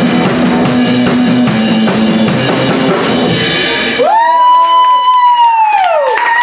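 Live rock band with drum kit and bass guitar playing a driving groove that stops abruptly about two-thirds of the way through, ending the song. A long, high cheering whoop from the audience follows, rising, holding and falling off at the end, with a few scattered claps.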